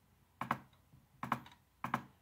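Three short, sharp computer clicks, about a second apart near the start, then closer together, each a quick pair of ticks from press and release. They are the inputs 2, 7 and a closing bracket being entered into an on-screen calculator on a laptop.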